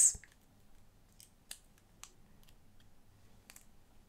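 Faint clicks and light taps of small plastic pen parts being handled and fitted together. There are about half a dozen short, sharp clicks, the loudest about a second and a half in.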